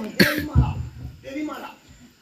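A loud, sharp cough about a quarter second in, followed by short bits of a man's speech.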